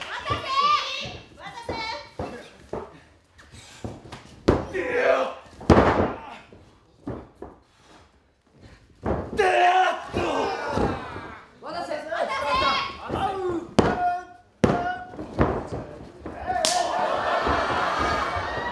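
Pro-wrestling match: wrestlers shouting and fans calling out, broken by a few thuds of bodies hitting the ring mat, the loudest about six seconds in.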